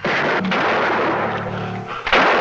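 A rifle gunshot at the start, its echoing boom dying away slowly over two seconds, with music underneath.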